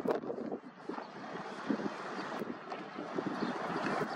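Wind buffeting the microphone, with small waves washing over a shallow tidal sandbar.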